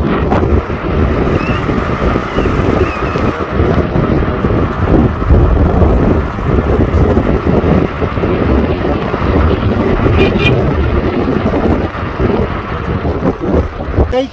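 Wind buffeting a phone microphone at the window of a moving car, over road and engine rumble.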